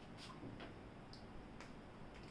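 Faint clicks of a whiteboard marker and its cap being handled, about four small ticks in two seconds, over quiet room tone.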